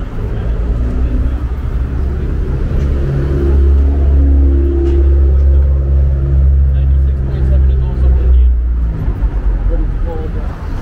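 A motor vehicle's engine running close by on the street, a low rumble with a steady hum that grows louder about three seconds in and fades away near the end.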